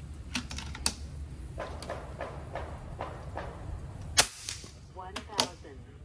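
FX Impact .30 PCP air rifle firing a single shot about four seconds in, a sharp crack that is the loudest sound. A few light clicks of the rifle being handled come before it, and two more clicks follow about a second after.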